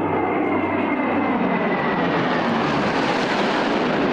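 A formation of World War II piston-engine fighters, including a P-38 Lightning, flying past overhead. Their engines make a steady drone with a faint whine that falls slowly in pitch, and the sound grows brighter toward the middle as they pass.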